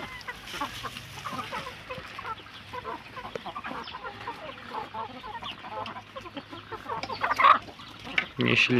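A mixed flock of chickens clucking as they peck at greens: many soft, overlapping clucks, with one louder call near the end.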